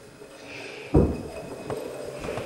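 An upturned drinking glass sliding across a wooden table-top under several people's fingertips, with a sharp knock about a second in and a few lighter clicks and scrapes after it.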